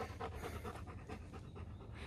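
Faint, quick panting, out of breath after a steep uphill climb.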